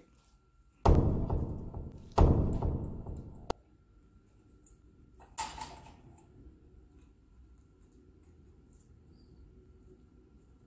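Two heavy thunks about a second apart, each ringing off briefly, then a sharp click, as an African grey parrot knocks a toy about inside its wire cage. A short hissy rustle follows about five seconds in.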